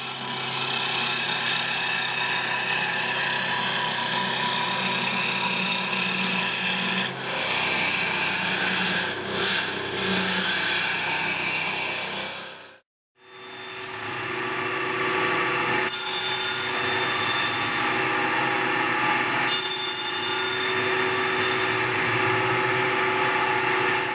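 Wood lathe spinning a stool-leg blank while a hand-held turning tool cuts into it: a steady scraping hiss over the machine's hum. The sound stops for a moment about 13 seconds in, then carries on.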